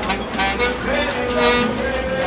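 Street sound with music playing: a quick, even percussive beat, about four or five strokes a second, under held tones, mixed with traffic.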